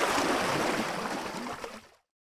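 A steady rushing noise with no pitch, fading out to silence near the end.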